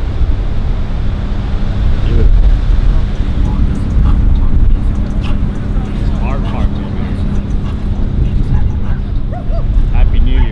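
Cars idling in the street with a steady engine hum over a heavy low rumble, with people talking around them.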